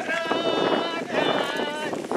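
A group of men and women singing together as they walk, in held, steady notes, over the shuffle and noise of the walking crowd.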